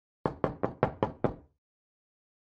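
Six quick knocks on a door, about five a second, lasting just over a second: someone knocking to announce their arrival.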